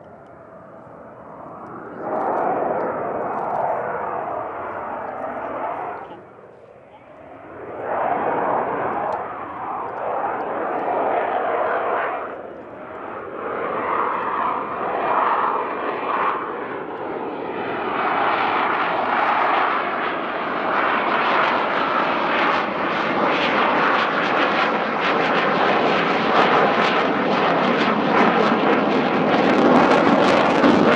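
Twin General Electric F404 turbofans of a Swiss Air Force F/A-18C Hornet in a display flight, a loud jet noise that swells and fades as the jet manoeuvres. It starts faint, surges about two seconds in and dips briefly a few seconds later, then builds steadily louder and brighter toward the end.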